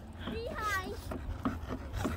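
A faint voice in the background with a brief falling pitch, followed by a few soft clicks and knocks close to the phone's microphone.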